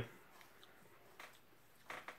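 Near silence: room tone, with two faint soft clicks in the second half.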